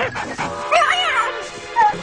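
A cartoon dog's voice crying out in wavering yelps that rise and fall about a second in, with a short yip near the end, over background music.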